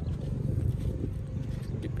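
Wind buffeting the phone's microphone: an uneven low rumble with no other clear event.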